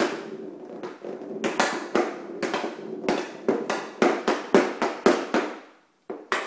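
Hockey stick blade and ball clacking on plastic dryland flooring tiles during stickhandling: a run of sharp, irregular taps that quicken to about three a second.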